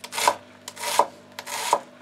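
Chef's knife dicing an onion on a wooden cutting board: a few quick chopping strokes, each ending in a knock of the blade on the wood.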